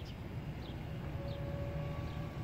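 The 2013 Dodge Journey's 2.4-litre dual-VVT four-cylinder idling under the open hood, a steady low hum; a faint steady whine joins about a second in.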